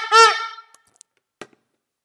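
Handheld plastic cheering horn blown in short buzzing blasts with a slightly wavering pitch; the last blast stops about half a second in. A light click and a short knock follow.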